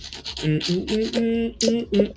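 A man's voice in short pitched syllables without clear words, each held briefly at a steady pitch.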